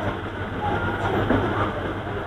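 Steady background noise with a low hum and a few faint voice-like fragments, in a pause between a man's sentences.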